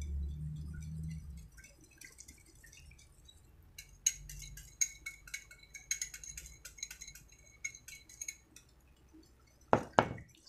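Light clinks of a metal utensil against ceramic dishware, about three a second for several seconds, as melted butter is worked into beaten eggs in a bowl. One sharper knock comes near the end.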